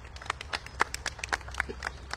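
A small group of people applauding, with individual hand claps heard separately and irregularly rather than as a dense roar.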